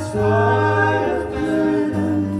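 A folk trio singing held notes in close vocal harmony, with a steady upright-bass note and acoustic guitars underneath.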